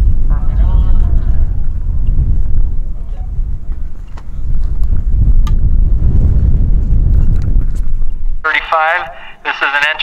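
Wind buffeting the microphone, a heavy low rumble with faint voices under it. About eight and a half seconds in, a man begins announcing.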